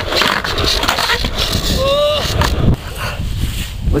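Skateboard rolling and clattering on the concrete of a skatepark bowl, with a strong low rumble and sharp clacks. A short high call sounds about two seconds in.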